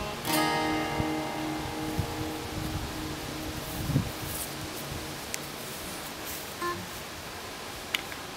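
Acoustic guitar: a final chord strummed about a third of a second in, left to ring and fade slowly. A low thump about four seconds in.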